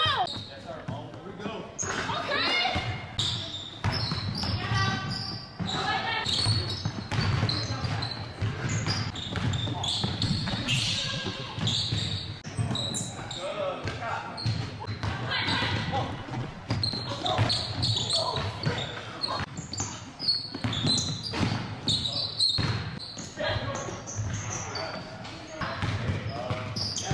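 Basketball bouncing on a hardwood gym floor, irregular knocks, with players' voices throughout, echoing in a large gym.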